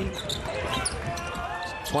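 A basketball being dribbled on a hardwood court, with sneakers squeaking as players move, and little crowd noise.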